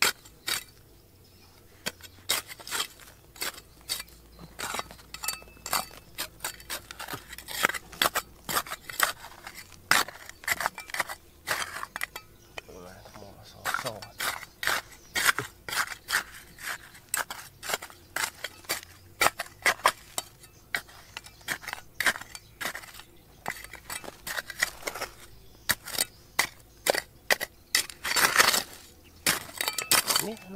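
Metal hand trowel digging into stony, gravelly soil, with rapid, irregular clinks and scrapes as the blade strikes rocks and drags through loose gravel.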